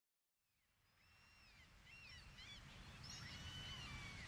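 Gulls calling faintly, short gliding cries over a low steady rumble, fading in from silence and growing louder toward the end.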